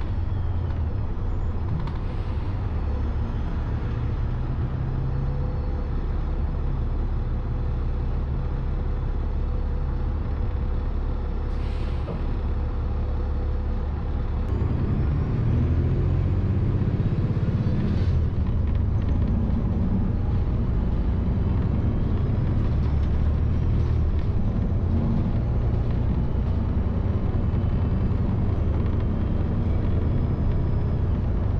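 City transit bus heard from inside the cabin: steady low engine and road rumble, with a short air hiss about twelve seconds in. The rumble grows louder from about halfway through as the bus gathers speed.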